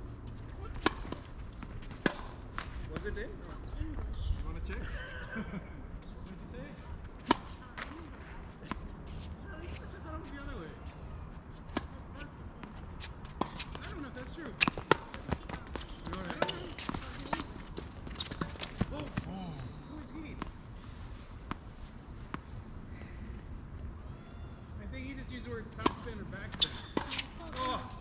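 Tennis balls struck by racquets and bouncing on a hard court during a doubles point: sharp, irregular pops, starting with a serve about a second in. Faint voices of players in the background.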